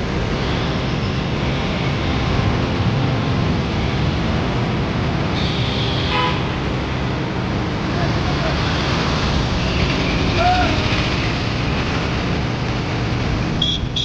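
Steady street din of vehicle engines and traffic with indistinct voices mixed in. A few short horn toots or calls stand out, about six seconds in and just before the end.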